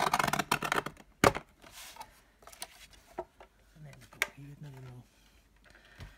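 A sliding-blade paper trimmer cutting a strip off a card: a scratchy swipe lasting about a second, then a sharp click just after. Fainter clicks and rustles of card being handled follow, with a short low hum of a voice near the end.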